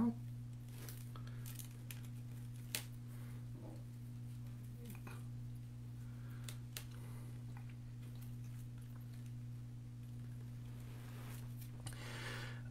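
Faint ticks and crackles of wire-stemmed artificial berry stems being pushed into a grapevine wreath, one a little louder about three seconds in, over a steady low electrical hum.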